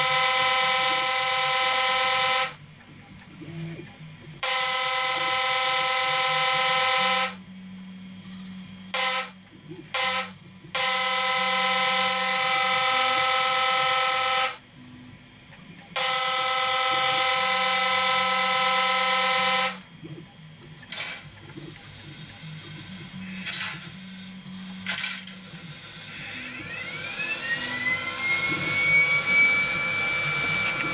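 Sound decoder in an H0 model of a class 163 electric locomotive playing the locomotive's horn through the model's small speaker. It gives four long blasts and two short ones, with a low hum between them. Near the end come a few clicks and a rising whine.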